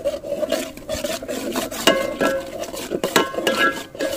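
Metal ladle stirring a thick curry in a metal pot, scraping the bottom and sides with short ringing clinks against the pot, most clearly about two seconds in and again just after three seconds.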